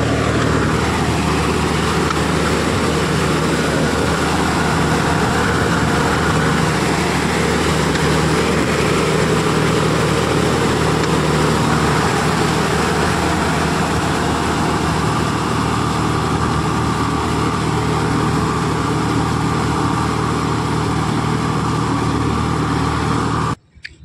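A John Deere tractor's diesel engine running steadily under load as the tractor drives through a flooded, muddy paddy field. The sound cuts off abruptly just before the end.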